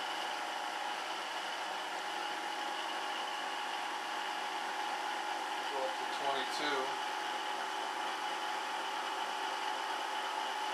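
Homemade dual opposing-rotor permanent-magnet motor running at about 3,000 rpm: a steady hum with several constant tones that does not change in pitch.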